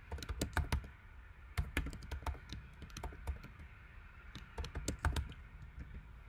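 Typing on a computer keyboard: quick runs of keystrokes in short bursts, with brief pauses between them.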